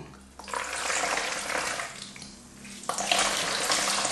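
Water streaming and splashing into a plastic bowl as a dish towel full of soaked, pureed newspaper is squeezed by hand, pressing the water out of the paper pulp. It comes in two spells, starting about half a second in and again near three seconds in.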